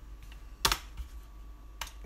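Computer keyboard keys clicking as a word is typed: a few separate keystrokes, the loudest a little over half a second in and another near the end.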